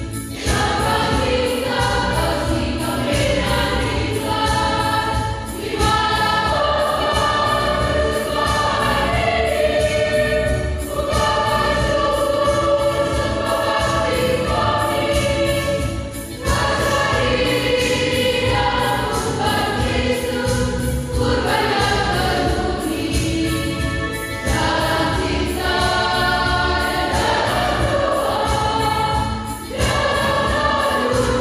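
A choir singing a hymn in phrases of about five seconds, with short breaks between them.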